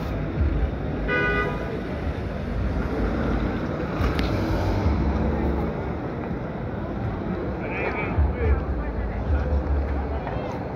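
City street traffic with a steady low rumble, and a short car horn toot about a second in.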